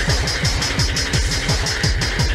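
Hardtek / free tekno dance music: a fast, pounding kick drum with quick hi-hats and a steady high synth tone.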